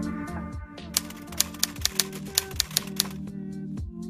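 Intro music with a typewriter sound effect: a quick, uneven run of about a dozen key clicks between about one and three seconds in, over a steady backing.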